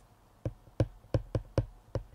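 Hard stylus tip tapping on a tablet's glass screen while handwriting, about six short sharp taps starting about half a second in.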